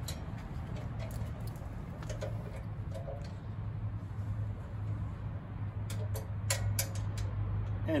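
Light metallic clicks and ticks of an Allen key turning the screws of a stainless steel mounting bracket, coming more often near the end, over a steady low hum.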